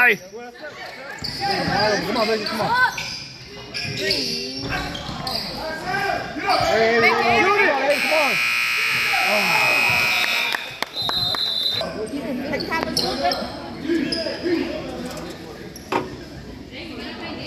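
Gym scoreboard buzzer sounding for about two and a half seconds, followed by one short referee's whistle blast, over spectators' voices and a basketball bouncing on the hardwood court.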